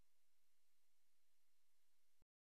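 Near silence: only a faint, steady hiss of recording noise.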